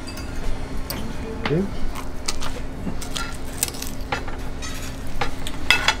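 Metal fork and serving utensil clinking and scraping on a ceramic plate as a whole grilled fish is filleted, in a scatter of short, irregular clicks over a steady low hum.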